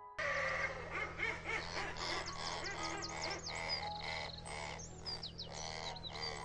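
A dense chorus of bird calls given as the razorbill's sound: many quick, high-pitched chirps and whistles, some sliding down in pitch, over a steady low hum. It starts just after the beginning.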